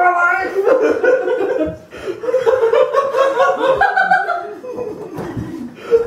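Several people laughing loudly, in waves with short breaks, along with a few unclear spoken sounds.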